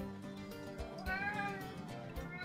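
A cat meowing once, a single drawn-out meow that rises and falls in pitch about a second in, over soft background music.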